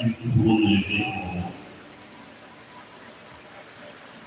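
A man's voice speaking into a hand-held microphone for about the first second and a half. Then he pauses, leaving only a steady low background noise of the room.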